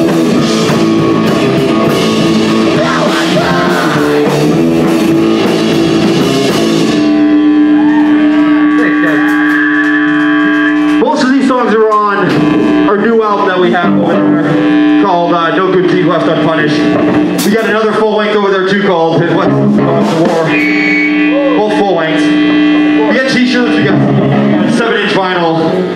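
Punk rock band playing live: distorted electric guitars, bass and drum kit with cymbals. About seven seconds in the drums and cymbals stop and an electric guitar is left sustaining one steady ringing note, with bending, wavering sounds and a few sharp hits over it.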